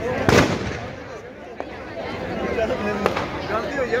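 Firecrackers going off inside burning Dussehra effigies: one loud bang about a third of a second in, then scattered sharp cracks over crowd voices.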